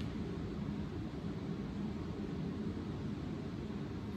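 Steady low background hum with a faint hiss, unchanging throughout, with no distinct sounds on top.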